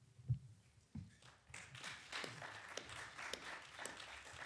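A single thump against the table microphone, then audience applause from about a second in: light, scattered clapping that follows the end of a speaker's remarks.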